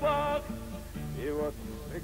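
A sung Russian song with band accompaniment. A male voice holds the last note of a line briefly with vibrato, then the band plays a short instrumental gap with a bass line before the next verse.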